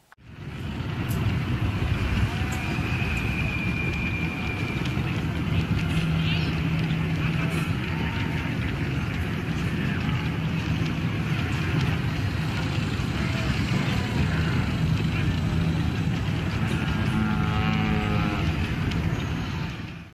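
Busy street ambience: a steady din of indistinct crowd chatter mixed with vehicle rumble, fading in at the start and out at the end, with a few brief warbling tones along the way.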